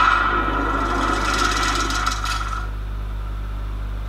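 A rasping, grinding sound effect from a video playing over speakers. It lasts about two and a half seconds, then dies down to a low steady hum.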